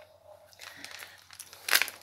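Faint handling noise, then near the end a short loud rustle with clicks as the clear plastic earring stand is moved against the phone.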